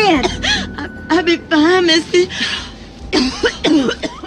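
A woman coughing in a fit, several coughs with strained voiced sounds between them, over quiet background music: the cough of a woman sick with tuberculosis.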